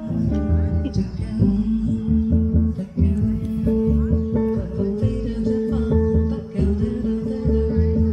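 Live jazz trio: an archtop guitar and an upright double bass accompany a woman singing into a microphone, with the bass keeping a steady low pulse under held sung notes.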